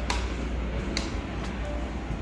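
Sharp clicks of a wall light switch being flipped, one at the start and another about a second in, over a steady low rumble.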